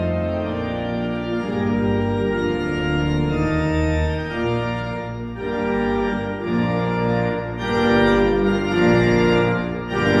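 Cathedral pipe organ playing slow sustained chords over a deep pedal bass, the harmony changing every second or so and swelling louder near the end.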